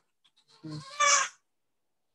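A man's short murmured "mm", then, about a second in, a brief high-pitched animal call.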